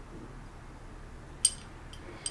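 Metal pieces of a Hanayama Keyhole cast puzzle being worked by hand: one sharp metallic clink with a brief ring about a second and a half in, and a fainter tick just before the end, over a low steady background.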